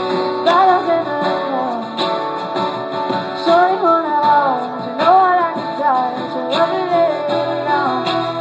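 Live acoustic duo: two acoustic guitars strummed under a sung melody, played through a PA.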